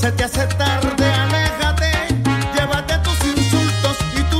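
Salsa music from a DJ mix: a recorded salsa track with a syncopated bass line and steady Latin percussion.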